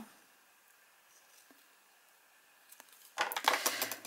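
Near silence with a few faint ticks, then, about three seconds in, a quick run of clicks and clatter from a steel kitchen knife and a hard plastic bottle cap being handled and put down on a table.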